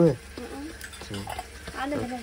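A short burst of voice at the start, then soft slaps and taps of flatbread dough being patted flat between the palms, under a low steady background from the cooking fire.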